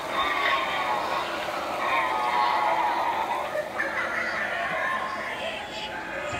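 A wavering, pitched, voice-like sound effect from a Halloween haunt prop, running steadily with its pitch bending up and down.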